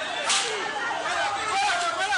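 A brief, sharp burst of noise about a quarter of a second in, over people's voices on a street.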